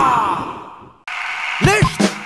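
A rock theme song ends on a held vocal note that fades away over about a second. After a brief near-silent gap the next version of the song starts, with a short vocal exclamation near the end.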